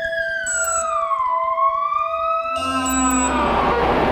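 Live-coded electronic music: a synthesized tone glides down and then back up like a slow siren over a steady held tone. About two and a half seconds in, it gives way to a dense, hissing noise texture over a low bass drone.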